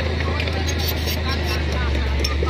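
A dump truck's engine idling, with a steady low drone.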